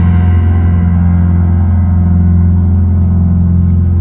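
Live concert music from a grand piano: a low chord held and ringing on, its upper notes slowly dying away while the bass stays steady.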